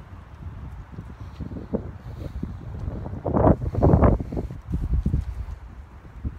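Wind buffeting the phone's microphone in gusts, rumbling low and loudest a little past the middle.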